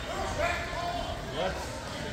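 Spectators' voices calling out in a gym during play, with no words picked out clearly.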